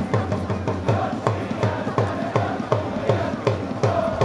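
Supporters' drum beaten in a steady rhythm, about three beats a second, with a crowd of fans chanting along in the stands.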